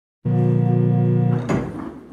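Tannenberg pipe organ (c. 1792) sounding a loud sustained chord, cut in sharply a quarter second in and released after about a second; then a sharp wooden knock from the organ's stop action as the next stop is drawn.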